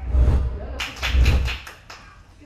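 Short TV news transition sting: two deep bass hits with a whooshing hiss over them, one at the start and one about a second in, then fading.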